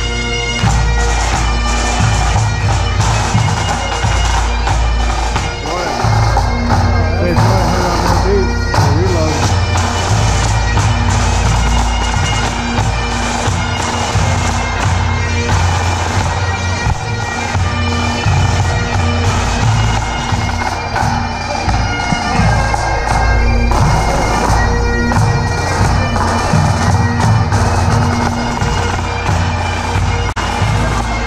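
Bagpipes of a marching pipe band playing a tune: steady drones held under the shifting chanter melody.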